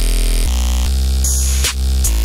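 Electronic bass music: a sustained, buzzing synth bass note with a stack of overtones, changing tone about half a second in, and a drum hit near the end.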